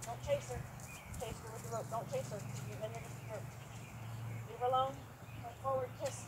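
Hoofbeats of a horse trotting and cantering over grass on a lunge line, with faint voices.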